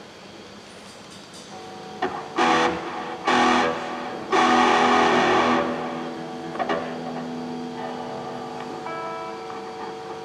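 Amplified electric guitar strumming three loud chords about a second apart, the third held and left to ring out, followed by a few softer notes near the end.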